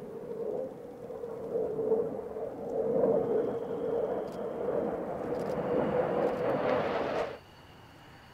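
F-15J Eagle fighter's twin turbofan jets heard in flight during a display pass, a rumbling jet roar that swells in loudness over the first few seconds. It cuts off abruptly about seven seconds in.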